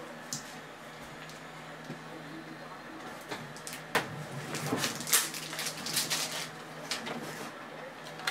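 Faint rustling and clicking of trading cards and foil card packs being handled, busier from about four seconds in, over a steady low hum.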